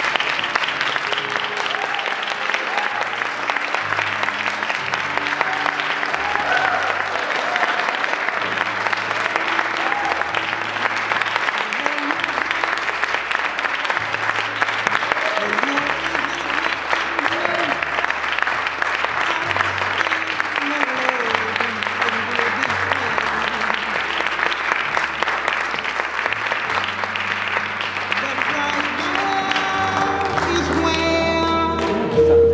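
Audience applauding steadily, with music and its low bass notes playing underneath.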